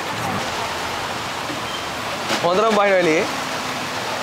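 Steady hiss of heavy rain, even throughout, with a man's voice calling out briefly about two seconds in.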